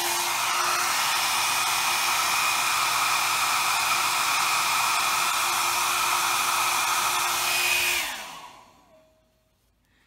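A 1875-watt travel hair dryer blowing hot air steadily to shrink heat-shrink tubing over soldered wire joints. About eight seconds in it is switched off, and its motor whine falls in pitch as it spins down.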